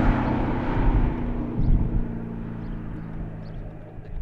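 2015 Ford Mustang driving away at speed after a pass, its steady engine note fading as it pulls off into the distance.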